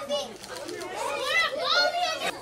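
Children's voices in a room: chatter and high-pitched calls that grow louder and rise in pitch in the second half.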